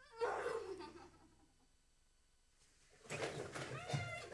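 Two short vocal cries, quieter than the speech around them: one falling in pitch just after the start, then a longer, wavering one from about three seconds in.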